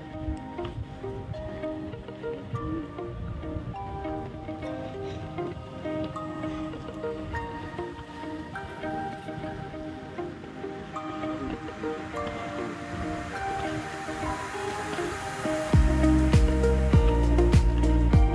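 Background music: soft melodic notes, then about 16 seconds in the track turns much louder with a heavy bass and drum beat.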